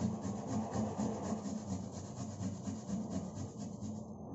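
Food being grated by hand on a stainless steel box grater: repeated scraping strokes, about four a second.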